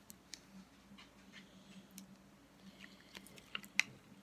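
Faint handling sounds of a small foam squishy keychain being squeezed in the hands: scattered soft clicks and rustles, with one sharper click near the end, over a faint steady hum.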